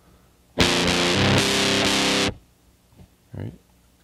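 Heavily fuzz-distorted electric guitar strumming a two-string chord on the low open F and A-sharp strings, the chord shifting up to the second frets partway through. It lasts under two seconds and is then cut off sharply.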